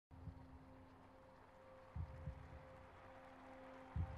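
Near silence: a faint steady hum, with a few soft low bumps near the start and about two seconds in.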